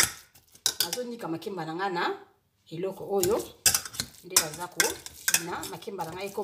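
Metal wire potato masher pressing plantain pieces in a stainless steel pot, clanking against the pot's sides and bottom again and again in short irregular knocks.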